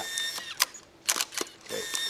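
Camera shutter firing several times in quick, uneven succession, with a faint high steady tone under the first clicks.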